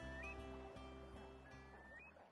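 Soft music of held low chords fading out, with a curlew's rising whistled call heard twice over it.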